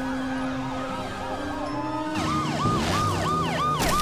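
Emergency-vehicle sirens in a fast yelp, each cycle a quick rise and fall: a fainter, lower siren first, then a louder, higher one from about two seconds in, cycling about three times a second.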